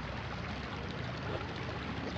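Spilled water running steadily in a shallow sheet along a creek bed, an even rushing noise.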